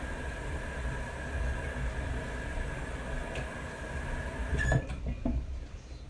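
Water running steadily from a sink tap, then shut off abruptly about three quarters of the way through.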